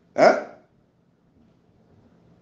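A single short dog bark near the start.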